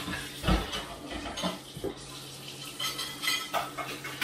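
Dishes and cutlery clattering at a kitchen sink as they are washed by hand: irregular clinks and knocks, the heaviest about half a second in.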